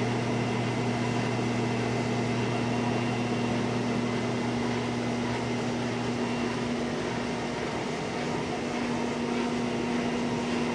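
Web-converting test stand running: a steady mechanical hum from its drive and rollers as a nonwoven web feeds through the air-loaded nip rollers. A low part of the hum drops away about two-thirds of the way through while the rest keeps running.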